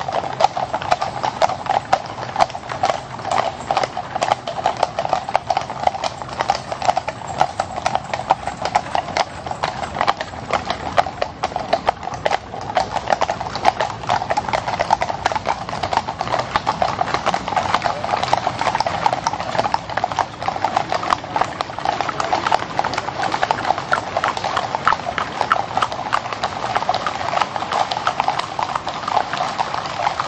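Hooves of several carriage horses clip-clopping on an asphalt road as a line of horse-drawn carriages passes, the hoofbeats of different horses overlapping in a dense, continuous patter.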